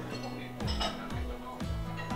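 Background music with a steady bass line and a kick-drum beat about twice a second. Just under a second in, a light clink of chopsticks against a china plate.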